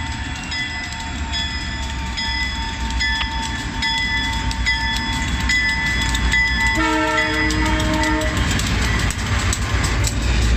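Canadian Pacific EMD diesel freight locomotives rolling slowly past close by, with engine rumble and a bell ringing at a steady pace. The air horn sounds one chord for about a second and a half, about seven seconds in.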